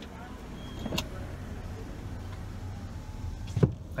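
Car idling with a steady low hum while the driver's power window rolls up, ending in a sharp thump as the glass closes near the end. A single click comes about a second in.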